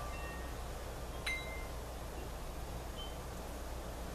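Chimes ringing faintly now and then over a steady low hum. A light strike about a second in leaves a high note ringing briefly, and another short high note sounds near the end.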